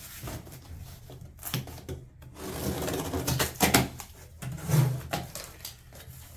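A cardboard box being opened by hand: a knife slits packing tape, then the cardboard flaps are pulled apart with scraping, rustling and several short sharp knocks.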